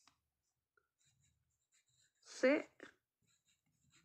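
Pencil writing faintly on notebook paper, with one short spoken syllable a little past halfway through.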